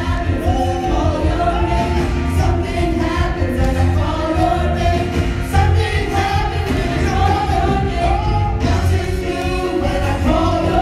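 A live gospel worship song: a group of men and women singing into microphones over instrumental accompaniment with a steady low bass.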